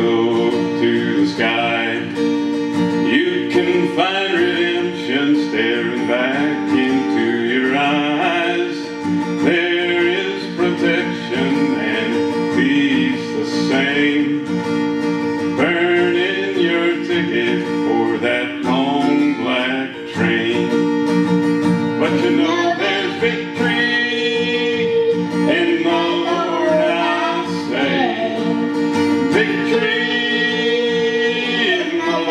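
Acoustic guitar strummed in a country style, with a voice singing over it.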